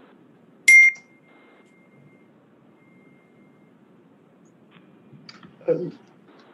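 A single short electronic beep about a second in, a sharp high tone that lingers faintly afterwards, over the faint hiss of an open audio line.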